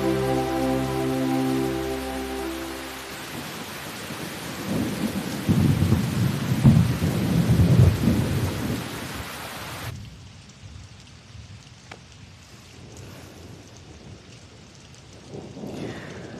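Heavy rain falling steadily, with deep rumbles of thunder loudest about five to eight seconds in. About ten seconds in the rain abruptly turns fainter and duller.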